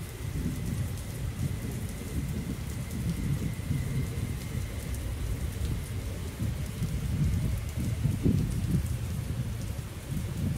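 Lake water lapping against the pier posts and a moored boat's hull, under a low rumble of wind on the microphone that swells and dips unevenly.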